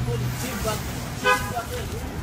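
City street background: traffic noise with a low steady hum during the first half second and a few faint voices in between.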